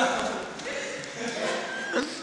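People's voices calling out, loudest at a sudden burst right at the start.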